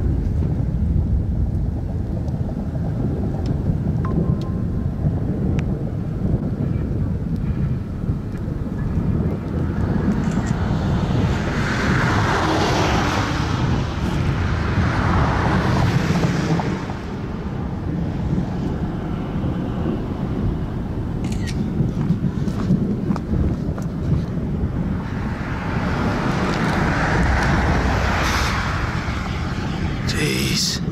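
Strong wind buffeting the microphone in open country: a steady low rumble throughout. Two longer rushing swells rise and fade, one in the middle and one near the end.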